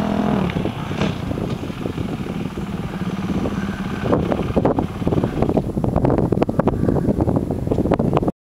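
Honda supermoto motorcycle engine running at low revs as the bike rolls slowly across the paddock, with a steady low engine note. From about halfway in, wind buffets the microphone in rough gusts.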